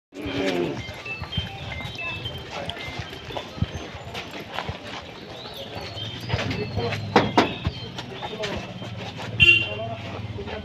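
People talking in the background over scattered knocks, with two louder metallic clanks about seven and nine and a half seconds in from an iron gate being pushed and handled.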